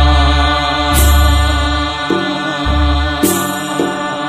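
Bathou aroz, a Bodo devotional song: a sustained, chant-like melody over long deep bass notes, with crashes about a second in and again about three seconds in.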